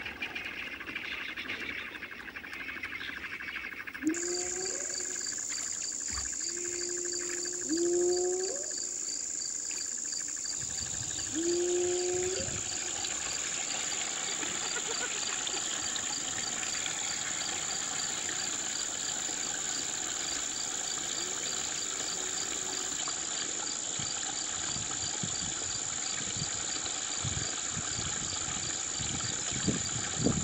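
Forest night ambience: a steady, high-pitched chorus of crickets begins about four seconds in and carries on throughout. Three short, low calls sound at roughly four-second intervals in the first half.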